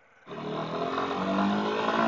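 Single-cylinder motorcycle engine accelerating, its pitch rising steadily. It cuts in abruptly about a quarter of a second in.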